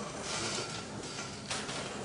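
Chalk scratching on a blackboard in short curved strokes, with a sharper stroke about one and a half seconds in.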